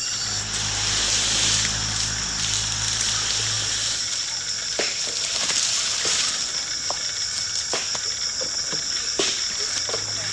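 Insects chirring steadily in a high, continuous drone. A low hum runs under it for the first few seconds, and scattered short clicks and crackles come in the second half.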